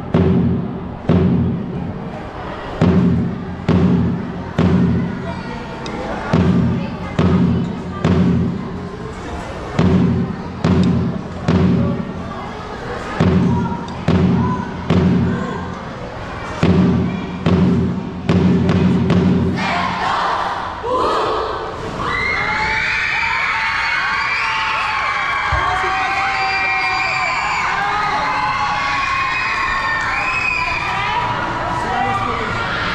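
A drum and lyre band's drums beating heavy low strikes, roughly one a second in uneven groups. The drumming stops about two-thirds of the way through, and a crowd of children breaks into cheering and shouting.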